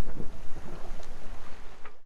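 Wind buffeting the microphone over water rushing along the hull of a sailboat under way at sea. It weakens in the last half second and cuts off abruptly at the end.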